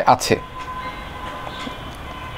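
A brief spoken syllable or two at the start, then a steady background hum with faint constant whining tones.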